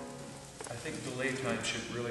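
The last chord of a violin and piano passage dying away in a concert hall's reverberation, followed by faint speech.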